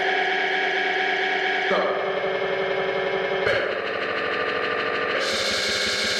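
Breakdown in an electronic dance music DJ mix: sustained synthesizer chords with no kick drum, changing about every second and a half to two seconds.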